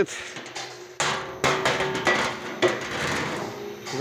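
Steady hum of a cooking kettle's stirrer drive running, broken by a series of sharp metallic knocks and clatters on the stainless steel kettle, the loudest about one and a half and two and a half seconds in.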